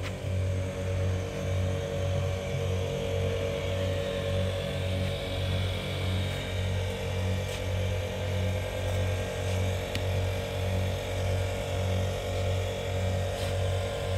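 A motor or engine running steadily, with a low throb pulsing about two or three times a second.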